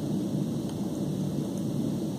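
Steady low rumble of background room noise with no distinct events in it.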